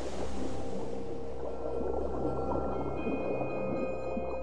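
Background music: a low sustained drone with a few steady held tones, under a busy field of short wavering underwater-like squeals and gurgles.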